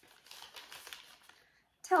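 Soft crinkling of a wax melt's wrapping being handled, lasting about a second, followed by a word of speech at the very end.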